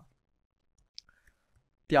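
A single faint click of a computer keyboard key being pressed, about halfway through, otherwise near quiet; a spoken syllable begins near the end.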